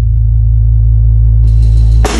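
Loud, deep electronic bass drone from the pre-recorded electronics of a piece for snare drum and electronics, played over the hall speakers with no drum strokes; a faint high hiss joins about a second and a half in.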